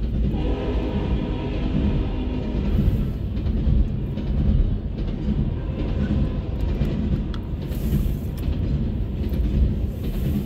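Double-stack intermodal well cars rolling past at speed: a loud, steady rumble of steel wheels on the rails, with occasional sharp clicks as the wheels cross rail joints.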